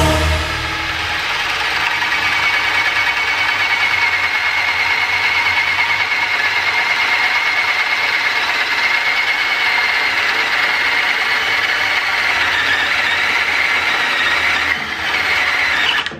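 Cordless drill running steadily under load, boring a spade bit through a wooden board, with a steady whine; the sound cuts off suddenly at the end.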